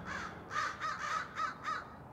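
Crows cawing, a quick series of about seven short caws.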